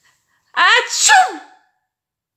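A voice acting out a sneeze, 'atchoum': a rising 'aaa' that breaks into a falling 'tchoum', starting about half a second in and lasting about a second.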